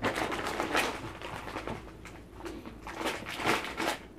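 Plastic sweet packet crinkling and rustling as it is picked up and handled, in two stretches with a short lull between.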